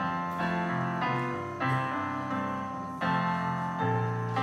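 Piano playing the introduction to a hymn, sustained chords struck anew about every second and fading between strikes.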